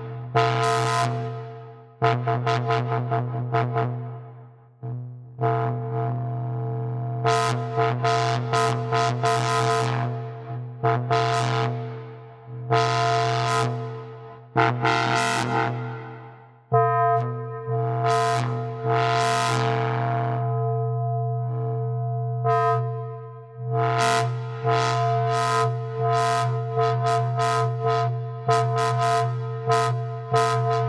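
Reaktor Blocks modular software synth patch playing: a steady low tone with repeated bright, plucky notes over it. The brightness of the notes sweeps up and down as the patch is modulated from the mod wheel. The sound dips and restarts a few times.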